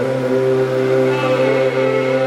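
Carnatic alapana in raga Bhairavi: a long held melody note with slow gliding ornaments over a steady drone, with no percussion.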